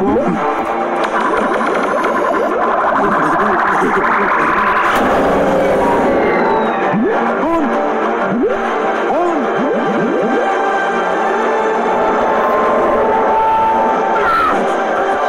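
Soundtrack of an animated cartoon: background music with a rising sweep that builds for a few seconds and stops sharply, then a run of short, arching cartoon-character vocal sounds over the music.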